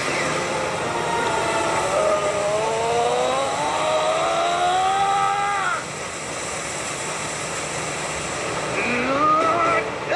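Anime fight-scene soundtrack: a long drawn-out tone with several overtones climbs slowly in pitch and cuts off about six seconds in, then another rising tone starts near the end, all over a steady rumbling noise.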